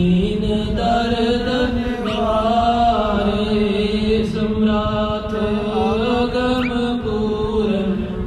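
Devotional chanting: voices singing long held, gliding notes over a steady low drone.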